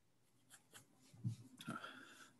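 Quiet pause at a podcast microphone: a couple of faint clicks and a soft thump from a man moving his hands and arm near the mic, then a faint murmur near the end.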